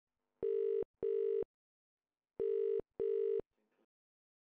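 Telephone ringback tone heard by the caller while the line rings at the other end: two double rings, each a pair of short steady beeps with the pairs about a second apart.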